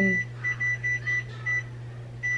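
A printer's control panel beeping: about five short high electronic beeps in quick, irregular succession as the printer is tended while its ink is replenished. A steady low machine hum runs underneath.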